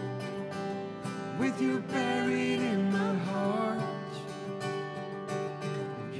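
Acoustic guitar strummed through a passage of a folk-style song, its chords held steadily, with a sliding melodic line over them in the middle.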